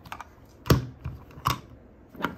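Hard plastic LEGO pieces of a Sonic speed launcher set clacking as they are handled: a few sharp separate clicks, the loudest about two-thirds of a second in and another about a second and a half in.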